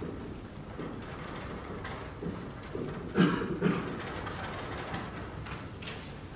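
Black dry-erase marker scratching across a whiteboard as a few words are written, in a run of short strokes with a stronger one about three seconds in.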